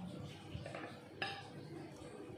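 A sharp clink on a plate a little over a second in, with softer rustling and tapping, as crab is picked apart by hand over the dish.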